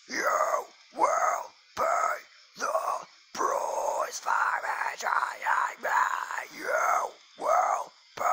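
A singer's unaccompanied voice making a string of short, wordless vocal bursts, about one a second, each sliding down in pitch.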